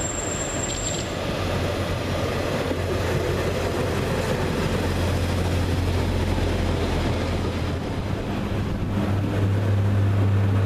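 A Class 144 Pacer diesel multiple unit running past at close range, its underfloor diesel engines droning steadily over the rumble of its wheels on the rails, growing gradually louder as it passes.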